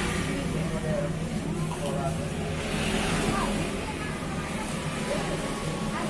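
A steady, low engine hum of motor vehicles on the road, with indistinct voices in the background.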